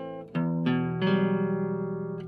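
Incidental music on a plucked string instrument: a few chords struck in quick succession about a third of a second apart, the last one left ringing and fading.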